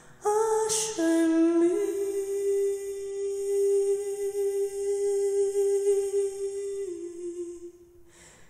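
A woman singing solo: two short notes, then one long note held for about five seconds that steps down slightly near the end.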